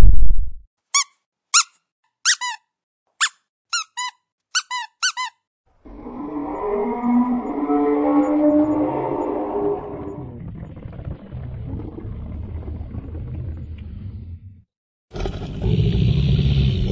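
A squeaky rubber dog toy squeezed in a quick run of about ten short squeaks. It is followed by a long, low, wavering dragon-howl sound effect that swells and then fades over about eight seconds. Near the end a loud rumbling roar begins.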